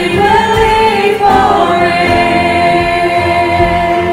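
Church worship team singing a worship song together, several voices at once, with a long note held through the second half.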